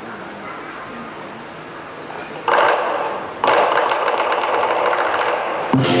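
Lion dance cymbals struck in a loud, rapid roll in two stretches from about two and a half seconds in, after a low background murmur. Near the end, the lion dance drum and gong beat comes in.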